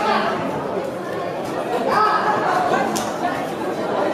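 Crowd of spectators chattering and calling out around a boxing ring, with louder single voices near the start and about two seconds in. One sharp click about three seconds in.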